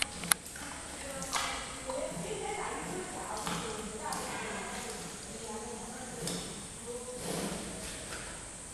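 People's voices talking in the background, with two sharp clicks just after the start.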